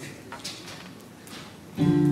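Acoustic swing band: a held chord stops right at the start, leaving a quiet stretch with a few light guitar strokes. The band then comes in loudly near the end.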